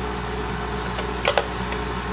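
Steady mechanical room hum with two quick clicks close together about a second and a half in.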